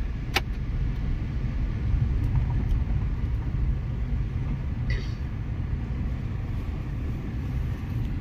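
Car driving slowly over a rough dirt road, heard from inside the cabin: a steady low rumble of engine and tyres, with a sharp click about half a second in and a brief rattle around five seconds.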